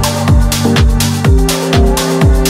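Electronic dance music with a fast, steady kick drum, about three beats a second, over held synth and bass notes.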